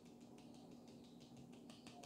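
Near silence: room tone with a low steady hum and faint, irregular light clicks.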